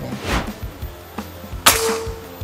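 A single sharp report of a PCP Morgan Classic pre-charged pneumatic air rifle firing, about one and a half seconds in, with a brief ringing tone after it.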